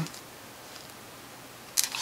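Quiet room tone in a pause between words, with a short faint noise near the end.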